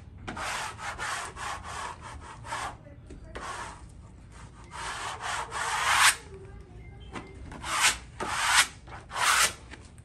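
Plastic wallpaper smoother rubbing wallpaper against the wall in dry, scraping strokes. First comes a quick run of short strokes, then a longer stroke about five seconds in, and three more strokes near the end.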